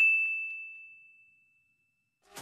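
A single high bell-like ding sound effect, one clear tone ringing out and fading away over about a second and a half.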